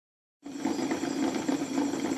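Bedini pulse motor running with three trigger coils firing as its 14-magnet neodymium wheel spins at about 105 rpm, a steady, rapid pulsing buzz.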